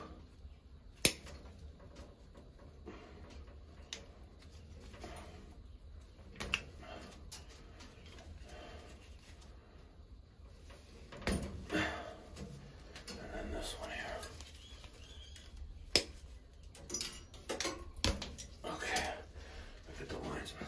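Hand work on thin electrical wires: a wire-stripping tool clicking and snipping, and wires rustling as they are bent and twisted together, with a few sharp clicks, the loudest about a second in.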